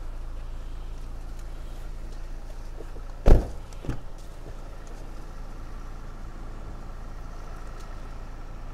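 A car door shutting with one loud thud about three seconds in, then a lighter knock about half a second later, over a steady low hum.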